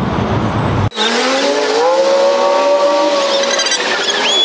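Traffic noise cuts off abruptly about a second in. A passing vehicle's engine then accelerates, its pitch rising and then holding steady for a couple of seconds.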